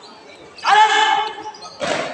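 A loud shout held on one pitch for about half a second, then a single sharp thump near the end.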